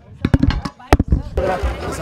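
Several sharp knocks or pops in quick succession, then, about one and a half seconds in, a sudden louder wash of many voices in a packed crowd.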